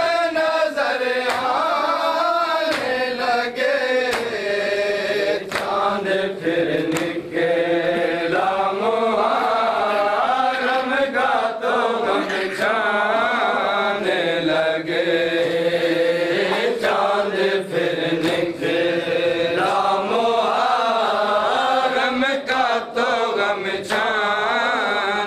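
Group of men chanting a Shia mourning lament (noha) in Punjabi/Urdu, with regular hand slaps on chests (matam) keeping the beat.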